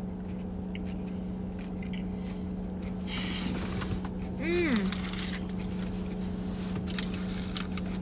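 Steady low hum of a car heard from inside its cabin, with a short murmured voice sound about four and a half seconds in and a few faint clicks near the end.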